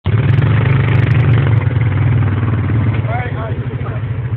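Two single-cylinder ATV engines, a Yamaha Grizzly 350 and a Honda Rancher 400AT, running hard and steadily as they pull against each other in the mud. The engine note eases a little about three seconds in, under a brief shout.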